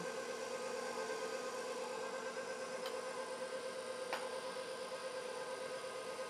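KitchenAid stand mixer running steadily with its paddle beating a thick cake batter, a constant even motor hum. A single light click about four seconds in.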